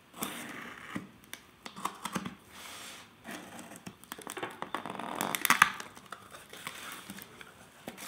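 Kershaw pocket knife slitting the packing tape on a cardboard shipping box, then the tape tearing and the cardboard flaps being pulled open: a run of irregular scrapes, rustles and small clicks, loudest about five seconds in.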